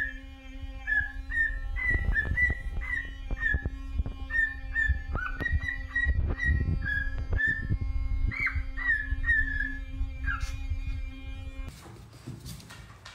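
Cockatiel whistling a long string of short, high notes in a tune-like run, a few of them sliding up or down in pitch, over a steady low hum.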